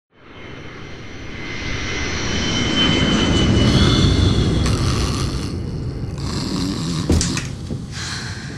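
Twin-engine jet airliner's engines running, a rumble with a high whine that swells from a fade-in to a peak about four seconds in. After a change near the middle, a lower steady airliner cabin drone follows, with one sharp knock about seven seconds in.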